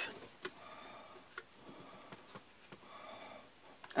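Faint, scattered small clicks and taps of thin wooden sticks against a plastic drain-pipe trap as the bait stick is wedged under the trigger stick, about five ticks in four seconds.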